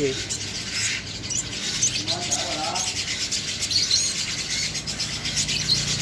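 Small birds chirping in thin, high tweets scattered throughout, over rubbing and rustling from a sunbird being handled in the hand as it flutters its wings.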